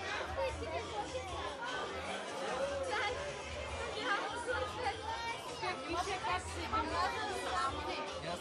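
Several people talking at once, overlapping voices with no one voice standing out, over a low steady hum.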